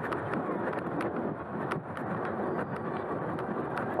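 Fat tyres of a Super73 S2 e-bike rolling through soft beach sand, a steady rushing noise mixed with wind on the microphone.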